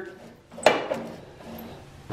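A single metallic clack from the foot pedal of a Dixie Chopper Eagle HP's cable-operated discharge chute as it is moved by hand, about two-thirds of a second in, with a short ring after. The pedal's cable is broken.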